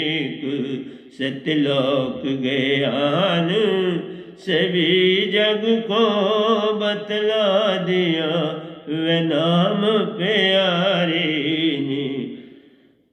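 A man's solo voice singing a Hindi devotional bhajan in long, drawn-out held notes with a wavering pitch, broken by short breaths about a second in, around four seconds and near nine seconds.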